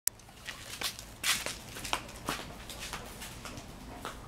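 Footsteps approaching: a run of irregular short scuffs and steps, the loudest about a second in, with a sharp click at the very start.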